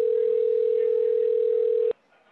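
Telephone ringback tone: one steady two-second ring of the call ringing at the far end, starting and stopping with a click.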